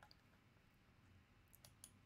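Near silence: room tone with a few faint clicks, once just at the start and a small cluster shortly before the end.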